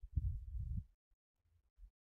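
Stylus writing on a pen tablet, picked up as faint, muffled low thuds and rubbing from the pen strokes. Most of it falls in the first second, with a few short taps after.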